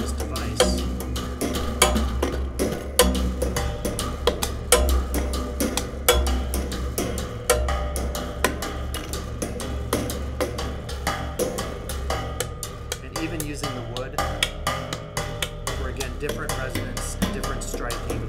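Homemade percussion box of springs, metal rods and a metal ruler struck by hand in rapid, irregular taps, each with a short metallic ring, over a steady low resonant hum. Wavering glides in pitch come in during the last few seconds.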